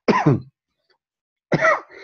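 A man clearing his throat once, briefly, with a falling pitch, heard over a video call.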